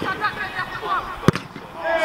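A football kicked hard once, a single sharp thud about a second and a quarter in, with players' voices calling in the background.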